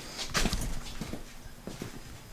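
Several light, irregular knocks and scuffs of footsteps on a concrete floor.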